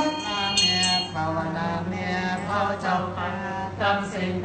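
Buddhist chanting: voices intoning a chant over a steady low drone, the melodic lines rising and falling.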